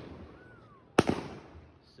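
Consumer multi-shot fireworks cake firing: the previous shot's report fades, then another sharp bang about a second in, ringing out as it decays.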